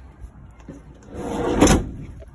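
A Westfalia camper van's door being pushed shut: a short rumble that builds over about half a second and ends in a loud clunk near the end.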